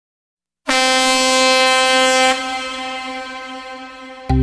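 Music backing track opening with a single loud air-horn-style blast after about half a second of silence. The one held note lasts about a second and a half, then fades away.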